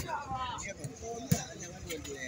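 A football-sized ecuavolley ball struck by hand on a serve: a sharp slap right at the start, then a second sharp knock about a second and a third later as the ball is played again.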